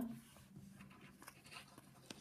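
Near silence with faint light scrapes and small taps on a tabletop as a fingertip slides a penny across it.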